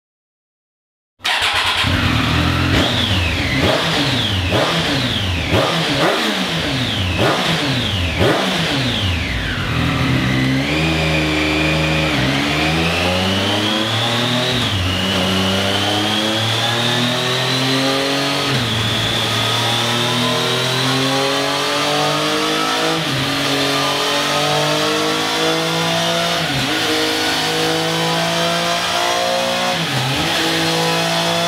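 Triumph Street Triple 765's three-cylinder engine, about a second in, starting a series of sharp throttle blips that rise and fall. From about ten seconds it makes a long run through the gears on a chassis dyno, revs climbing steadily with a short drop at each upshift.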